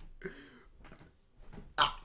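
A man's stifled laugh: a faint voiced sound, then a short breathy burst near the end.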